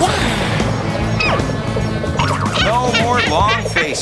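Cartoon soundtrack: steady background music with a sharp crash at the very start, then a string of short rising-and-falling squeaky vocal noises or sound effects in the second half.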